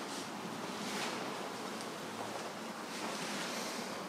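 Steady, even hiss of indoor room noise, with no distinct event.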